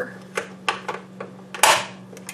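A wooden spoon knocking and scraping against a metal saucepan while stirring milk into granulated sugar: four or five sharp taps, the loudest and longest about one and a half seconds in. A steady low hum runs underneath.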